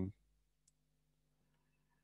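Near-silent room tone with one faint, short click about two-thirds of a second in.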